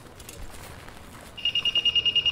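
Faint room noise, then about a second and a half in a walk-through metal detector's alarm starts: a high, rapidly pulsing beep, signalling that metal is still being detected on the passenger.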